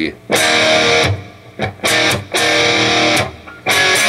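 Electric guitar, tuned a half step down, strumming rock rhythm chords in a stop-start pattern. A chord rings for about a second, a couple of short stabs follow, then another ringing chord, and a new chord is struck near the end.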